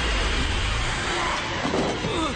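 Horror-film sound design: a loud, dense rushing noise with a deep rumble through the first second or so, and a few sliding tones near the end.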